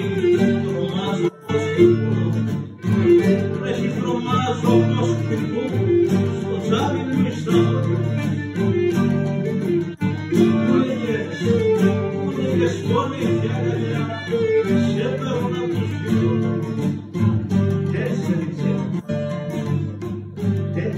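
Cretan music played on laouto, guitar and Cretan lyra, with the plucked laouto and guitar up front in a steady strummed accompaniment. There are two brief drops about a second and a half in and near three seconds.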